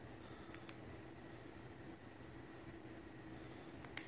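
Quiet room tone with a faint steady hum and a few light clicks as the brake lever and spring of a Shimano 105 ST-5500 shifter are pressed together by hand, the sharpest click just before the end.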